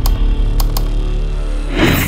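Dark, heavy intro music with a deep steady drone and held tones, punctuated by a few sharp clicks, with a noisy swish swelling near the end.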